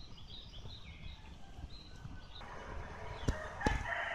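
Small birds chirping repeatedly. Past the midpoint a louder noisy stretch comes in, with two sharp knocks in the last second.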